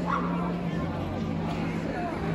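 A dog gives a short, high yip near the start, over steady low hum and murmuring voices in a large hall.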